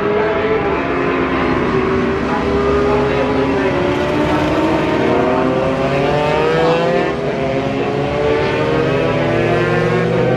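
A pack of racing motorcycles running hard through a curve, a mix of two-stroke GP bikes and 400 cc four-strokes, many engines sounding at once, their pitches climbing and falling as the riders open the throttle and change gear.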